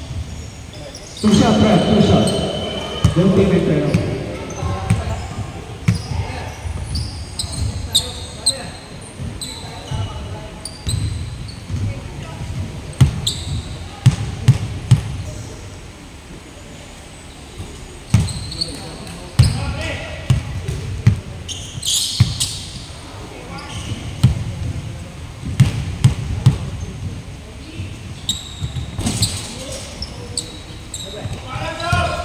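Basketball game on an indoor hardwood court: the ball bouncing, with sharp impacts throughout and players' voices calling out, loudest about a second in.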